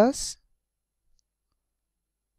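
A single spoken word, "plus", at the very start, then silence.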